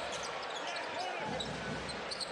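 Arena crowd murmur during live basketball play, with the ball dribbled on the hardwood court.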